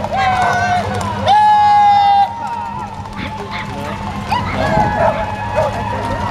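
Mostly people's voices: street talk and announcing. About a second in, one loud, high-pitched voice calls out and holds the note for about a second.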